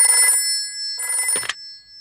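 Old-style telephone bell ringing in two short rings, about a second apart, with the tone of the second ring lingering briefly after it stops.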